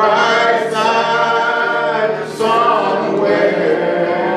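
Three voices, two women and a man, singing a gospel song together into microphones, holding long notes, with a short breath break about two and a half seconds in.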